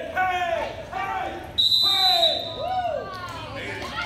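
Short, high, rising-and-falling shouts of "hey" driving cattle, repeated about twice a second. About a second and a half in, a high steady electronic beep sounds for under a second.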